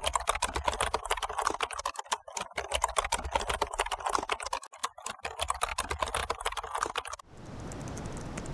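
Rapid, irregular typing on a computer keyboard, many key clicks in quick succession, stopping abruptly about seven seconds in.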